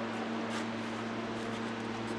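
Steady low electrical hum with an even fan-like rush from a battery-electric generator running under a load test of about 60 kW.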